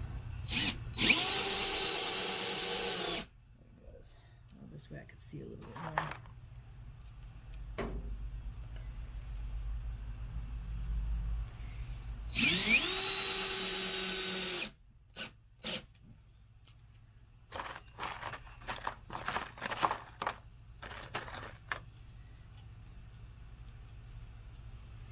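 DeWalt 20V cordless drill/driver driving wood screws into a thick pine board, its clutch set to 11 so it stops once the screw seats: two runs of motor whine about two seconds each, the second rising in pitch as it spins up. Later, a scatter of short clicks and knocks.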